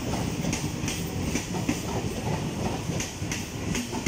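Eastern Railway suburban EMU local train rolling slowly along a station platform: a steady rumble with clicks repeating every third to half second as the wheels run over the rail joints.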